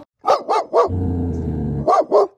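A dog barking in fear: three quick barks, then a long, low, steady growl lasting about a second.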